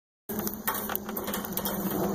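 Goat with its tongue poking out, making rapid irregular tongue and mouth clicks over a low, steady hum. It starts about a quarter second in.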